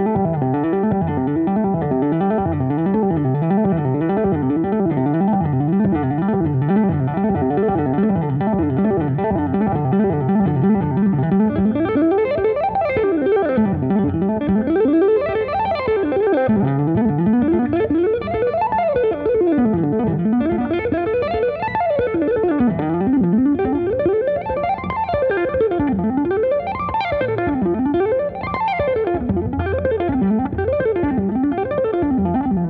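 Hollow-body archtop electric guitar played with two-handed tapping. For about the first twelve seconds it runs a fast lick that rises and falls evenly over and over. After that it switches to wide sweeping runs up and down the neck, each taking a second or two.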